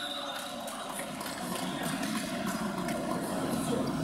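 Indistinct, echoing noise of an indoor futsal game, with scattered faint knocks from play on the hall floor.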